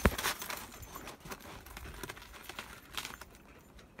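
Crunching and crackling of footsteps on packed snow and ice, densest at the start and fading, with a few faint clicks about three seconds in.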